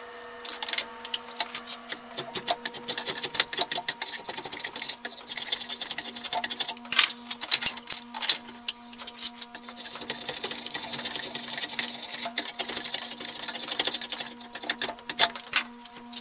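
Rapid, repeated scraping strokes of a hand edge tool shaving wood from a hickory sledgehammer handle, coming in clusters, over a steady low hum.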